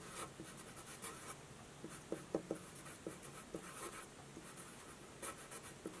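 Felt-tip marker writing on paper: a run of short, faint strokes as a word is written out.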